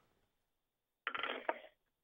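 Near silence, then about a second in a brief clicky, rustling noise lasting under a second, heard through a telephone line from the caller's end of a call.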